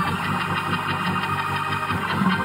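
Organ holding a chord with a fast, even throb of about six pulses a second.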